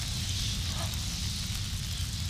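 Film sound-design ambience: a steady low rumble with a faint crackling hiss above it.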